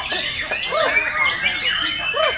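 White-rumped shama (murai batu) singing, its whistled notes overlapping with other caged songbirds singing at the same time, with a long high whistle near the end.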